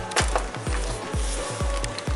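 Background music with a steady, fast bass-drum beat, about four beats a second.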